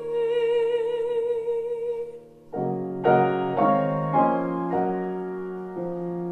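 A soprano holds a sung note with vibrato that fades out about two seconds in. A grand piano then enters with a series of chords, changing about every half second.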